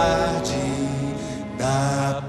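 Music from an acoustic band with a chamber orchestra: a soft passage of long held notes without lyrics, the low bass dropping away early on so the sound thins and grows quieter.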